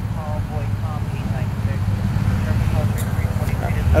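Steady low rumble of street noise, with faint voices talking in the background.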